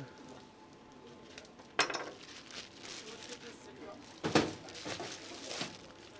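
Kitchen clatter of utensils and dishes: a sharp metallic clink about two seconds in and a louder knock just after four seconds, over the steady hubbub of a working restaurant kitchen.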